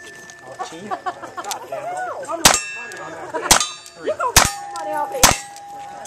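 Four revolver shots about a second apart, starting a couple of seconds in, each answered by the clang of a hit steel target. After the third shot a plate keeps ringing in one steady tone.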